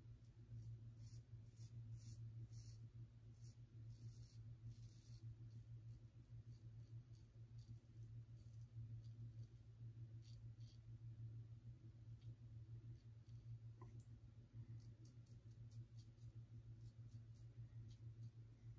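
Near silence with the faint, short scratches of a Gillette Tech safety razor's blade cutting lathered stubble on the upper lip: quick strokes in the first five seconds, sparser afterwards. A low steady hum runs underneath.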